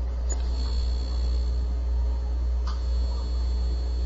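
Steady low electrical hum on the recording, with a faint thin high whine starting about half a second in. Two faint clicks come through, one just after the start and one near three seconds.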